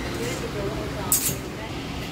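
Indistinct voices of people talking in a busy shop over a steady background hum, with one brief sharp click a little after a second in.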